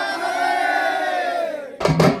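A group of men raising one long, drawn-out shout together, which trails off near the end. Barrel drums then strike up sharply in a steady beat.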